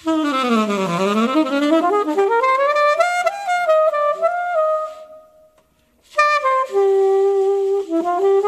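Unaccompanied alto saxophone improvising jazz: a fast run sweeping down into the low register and climbing back up to held notes, which fade away about five seconds in. After a short pause a new phrase of stepped notes begins.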